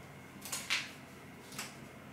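Paper release liner being handled and peeled off adhesive tape on a tablet's back: two short papery rustles, the louder about half a second in and a shorter one about a second later.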